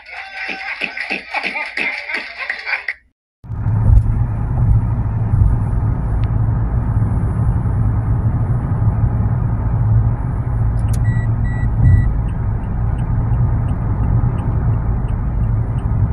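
Steady low road-and-engine rumble from inside a car driving at highway speed, starting a few seconds in after a short break in the sound. About two-thirds of the way through, three short beeps sound in quick succession.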